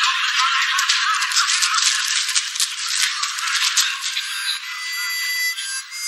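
Dense rattling noise for about the first four seconds, then a harmonica tune comes in near the end. The whole thing sounds thin, with no bass.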